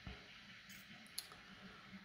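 Near silence: room tone, with one faint click a little past a second in.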